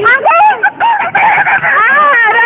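Several young people shrieking and laughing in high-pitched voices, the squeals overlapping throughout.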